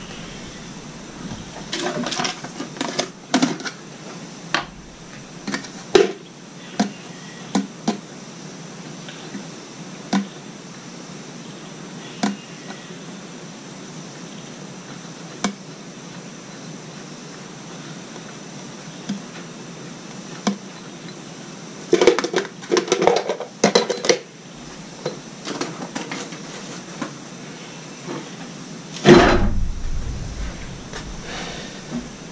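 Small metal parts and tools clinking and clattering as they are handled at a workbench. The sharp clicks and knocks come in scattered bursts, thickest about two seconds in and around twenty-two to twenty-four seconds, with a louder knock near the end.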